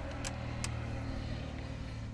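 An engine idling steadily as a low, even hum. Two sharp clicks come early on as hand tools work the valve rocker adjusters.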